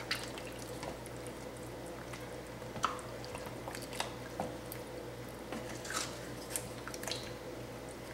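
A spoon stirring thick chili and beans in an Instant Pot's stainless steel inner pot: soft, wet squishing with a few light clicks of the spoon against the pot, over a faint steady hum.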